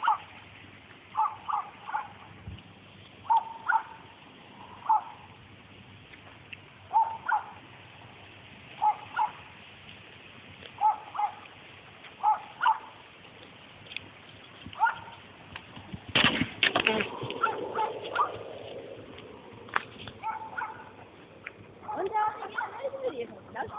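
A bird calling in short groups of two or three calls every second or two. About sixteen seconds in, a cluster of horse hoofbeats joins in for a few seconds.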